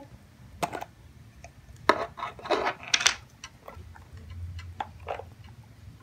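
Plastic screw-top lid being twisted open on a clear plastic cookie jar: a scattered series of irregular clicks, knocks and scrapes from the lid and jar being handled.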